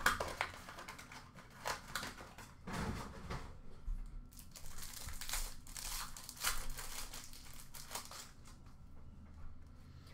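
Plastic-foil trading card pack wrappers crinkling and tearing as hockey card packs are handled and ripped open by hand, in irregular bursts that thin out near the end.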